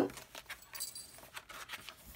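Small red metal jingle bells on a notebook's elastic band jingling faintly in a few light shakes as the notebook is handled and opened.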